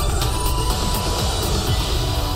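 Television show's theme music over its title bumper, loud and steady with a heavy bass.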